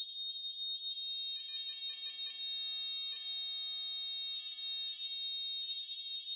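Improvised electronic music made of shrill, high-pitched steady tones with a rapid flutter, alarm-like in character. A little over a second in, more tones stack in, some lower, and near the end it thins back to the high flutter.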